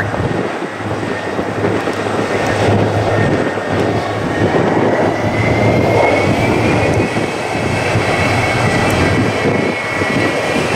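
McDonnell Douglas DC-10 freighter's three jet engines running at taxi power close by: a steady dense rumble, with a thin engine whine that rises slightly in pitch from about halfway.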